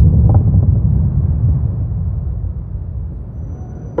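A deep, steady low rumble that fades gradually.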